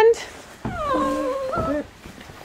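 A young Nigerian dwarf goat doe bleating once, a call of about a second that falls slightly in pitch: she is in heat and calling.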